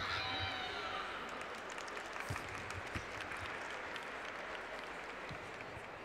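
Arena crowd applauding and cheering, starting suddenly and easing off over the next few seconds, with a few dull thuds about two and three seconds in.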